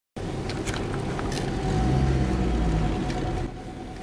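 Vehicle engine and road noise from a car driving along a street, a steady rumble with a faint whine and a few light clicks, easing off a moment before the end.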